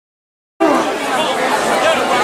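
Silence, then about half a second in the sound cuts in on a crowd of people chattering, several voices talking over one another.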